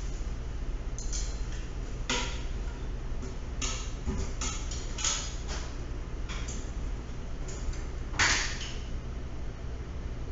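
A series of short, irregular knocks, clicks and rustles, the loudest about eight seconds in, over a steady low hum.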